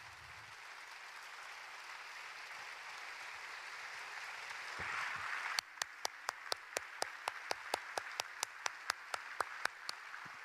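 An audience applauding, swelling over the first half. From about halfway, one person clapping close by stands out above the crowd in a steady rhythm of about five claps a second.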